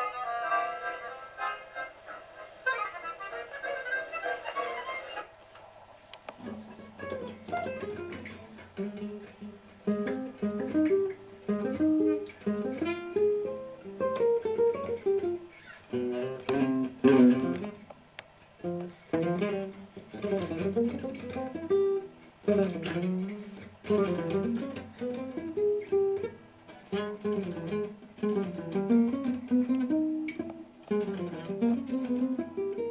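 Solo acoustic gypsy-jazz guitar with an oval sound hole, picked in single-note melodic runs. Other sustained music is heard first and breaks off abruptly about five seconds in, before the guitar begins.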